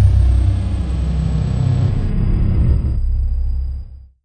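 Logo-sting sound effect: a deep, loud rumble that holds steady, with faint thin high tones above it, fading out at the very end.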